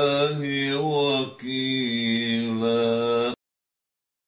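A man's voice reciting the Quran in the melodic, drawn-out tajweed style, holding long notes with a short break for breath just over a second in. The sound cuts off abruptly a little past three seconds in.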